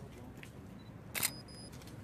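A single camera shutter click about a second in, with a faint thin high tone just after it, over a low outdoor background.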